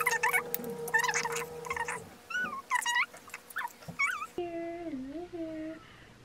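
A dog whining in short, high-pitched squeaks that waver up and down for about the first four seconds, followed by one longer, lower wavering whine.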